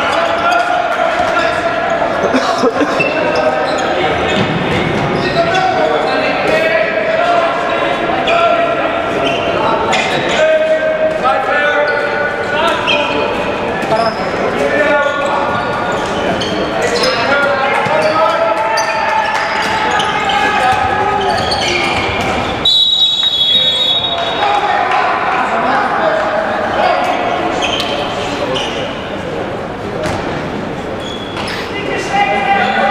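Handball being played in an echoing indoor sports hall: the ball bouncing on the court amid many players' and spectators' voices. About three-quarters of the way through comes a steady high whistle blast of about a second, typical of a referee's whistle stopping play.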